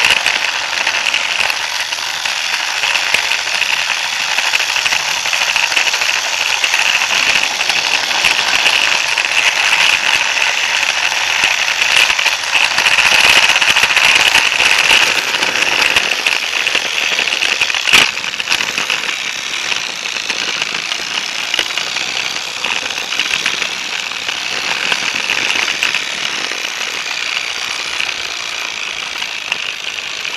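Toy train carrying an onboard camera, rattling and clattering steadily as its wheels run along plastic toy track, with one sharp click about eighteen seconds in.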